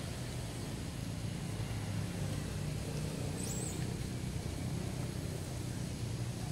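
Steady low rumble of outdoor background noise, with one short high chirp about three and a half seconds in.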